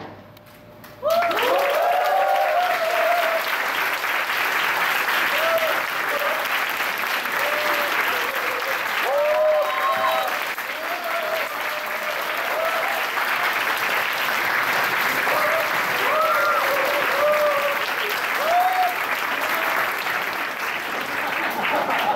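Audience applauding, breaking out suddenly about a second in and going on steadily, with scattered cheering shouts and whoops over the clapping.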